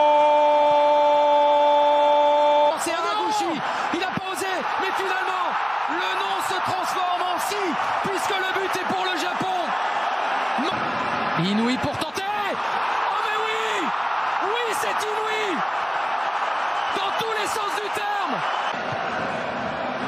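A football commentator's long, held cry of "gol" for about the first three seconds. After a sudden cut, a stadium crowd roars steadily, with excited commentary over it.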